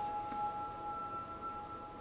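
Soft background music: two high, steady held tones with a bell-like ring, slowly fading.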